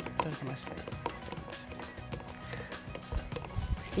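Quiet background music with scattered light clicks and taps of kitchen handling, and no loud event.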